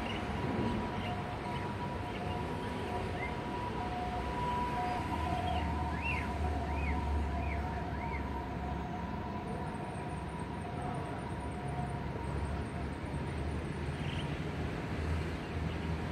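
A steady hum of two high tones over a low rumble, with a quick series of four faint chirps, likely from a bird, about six seconds in.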